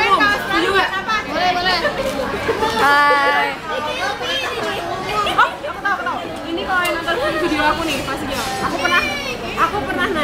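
Young women talking in conversation at a table, the talk continuing with no pause.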